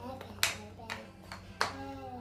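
Two sharp smacks about a second apart, the first a little under half a second in, with fainter taps between them, amid a child's voice.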